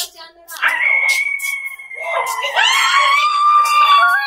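A person's long, high-pitched scream held for over a second. A second scream follows, sweeping up in pitch and then held.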